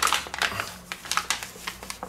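Paper flour bag crinkling and rustling as it is handled and tipped over a mixing bowl: a quick, uneven run of small crackles.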